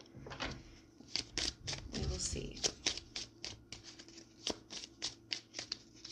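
A deck of tarot cards being shuffled in the hands: a run of quick, irregular card snaps and flutters, several a second, starting about a second in.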